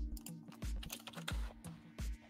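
Background music with a steady bass beat and held tones, with a quick run of sharp clicks over it through the middle.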